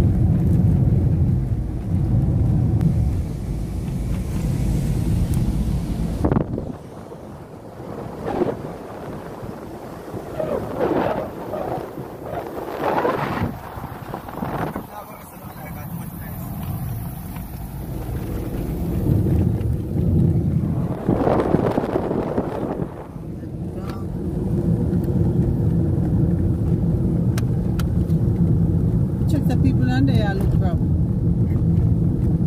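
Car engine and road rumble heard from inside a moving car, with indistinct voices. The rumble drops away about six seconds in and comes back about twenty seconds in.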